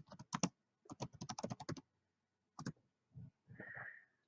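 Keystrokes on a computer keyboard: two quick runs of typing in the first two seconds, then a single tap.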